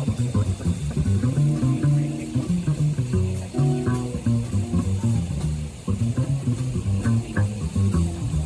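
Live jazz with an upright double bass played pizzicato: a steady run of plucked low notes carrying the line.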